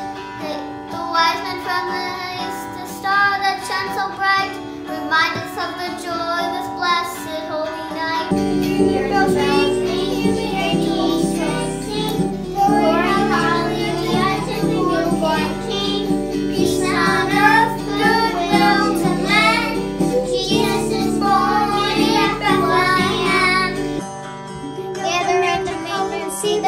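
Children singing a Christmas song over an instrumental backing that becomes fuller about eight seconds in.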